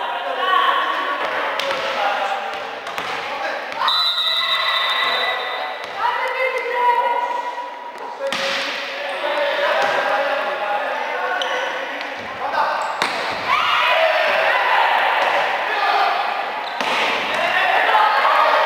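Indoor volleyball being played: the ball is struck several times with sharp slaps, amid shouting voices of players and spectators.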